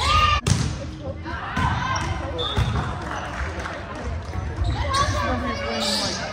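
Volleyball rally in a large gym: the ball is struck, one sharp hit loudest about half a second in, while players call out and the hall echoes.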